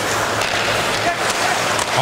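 Hockey arena crowd noise with the sounds of play on the ice: skates scraping and a few sharp clacks of sticks and puck.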